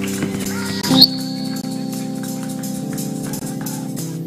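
Live praise music from a church band: held chords over a steady beat, with a brief loud burst about a second in.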